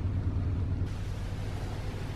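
Steady low rumble under a faint hiss; the hiss grows brighter just under a second in.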